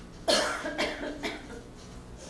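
A person coughing three times in quick succession, the first cough the loudest.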